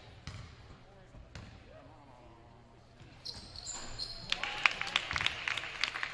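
Gym sounds around a free throw. For the first three seconds there are only faint voices. From about four seconds in, sneakers squeak sharply on the hardwood court and a basketball bounces as the players move off.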